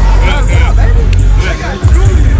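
Crowd of voices talking and calling out over loud music with a heavy bass.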